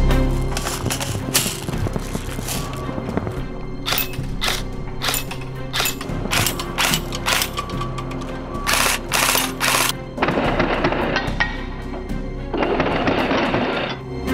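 Matrix SR25 airsoft electric rifle (AEG) firing in many short bursts over background music, then two longer bursts near the end.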